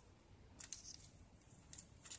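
Faint crinkling and rustling of thin nail-art transfer foil strips and their plastic packets being handled, in short bursts about half a second in and again near the end.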